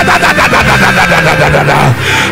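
Live church band music: a low bass or keyboard note held under a fast, even pulse of about nine strokes a second, which drops away near the end.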